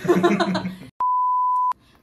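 A burst of voice that cuts off abruptly, then a single steady electronic beep of under a second, starting and stopping with a click: a bleep tone dropped in during editing.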